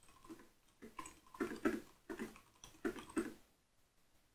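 Typing on a computer keyboard: quiet keystroke clicks in short, irregular bursts, stopping about half a second before the end.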